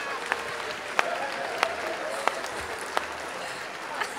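Audience applauding, with five sharp louder claps close by, about two-thirds of a second apart.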